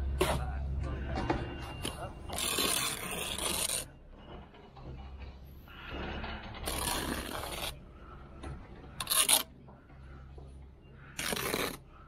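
A steel bricklaying trowel scraping through sand-and-cement mortar, taking it off the mortar board and spreading a bed along a course of bricks. There are four separate scrapes, each about a second or shorter; the third is the shortest and loudest.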